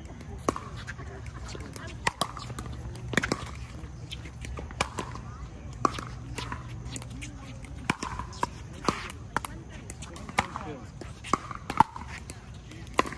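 Pickleball paddles striking a plastic pickleball during a rally: a dozen or so sharp, hollow pops, irregularly spaced from about half a second to two seconds apart.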